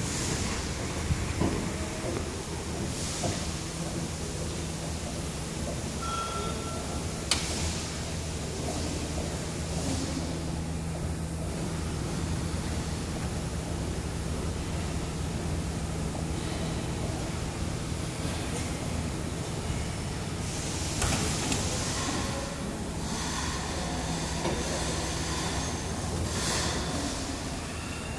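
Heavy truck's diesel engine idling steadily, under a steady hiss that the driver suspects is an air leak. A single sharp click comes about seven seconds in.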